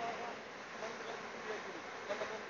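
Beach ambience at the shoreline: a steady, even hiss of sea and wind, with faint distant voices now and then.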